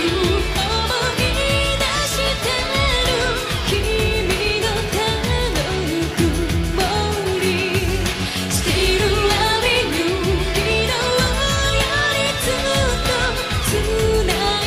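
A woman singing a Japanese pop song live into a microphone, backed by a band with drums, bass and electric guitar.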